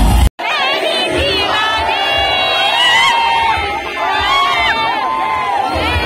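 Loud music breaks off abruptly just after the start. Then a large concert crowd cheers and screams, with many high voices rising and falling over one another.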